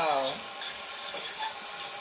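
Spaghetti being stirred in a stainless steel skillet with a utensil, over a steady faint sizzle of oil frying in the pan.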